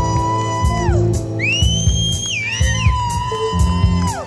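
A live rock band playing, with long sustained electric guitar notes that each end by sliding down in pitch, and a higher sliding note over the middle.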